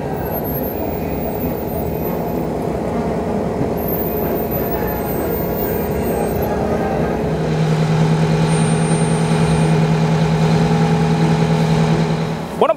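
Diesel engine of a coach-style tour bus running at low speed, a steady hum that grows clearly louder about seven and a half seconds in as the bus comes closer.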